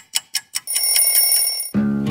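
Alarm clock going off: a run of quick electronic beeps, about five a second, then a steady high ring that cuts off sharply near the end. Strummed acoustic guitar music starts right after.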